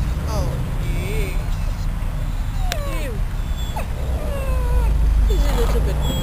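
Yellow Labrador whining in a string of short, falling whimpers over a steady low rumble. It is the whine of a dog recovering from abdominal surgery, which his owner says he also makes anywhere new or unwelcome, so it does not clearly show pain.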